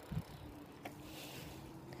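Faint low rumble and hum of a bicycle rolling along an asphalt road, with one light click about a second in.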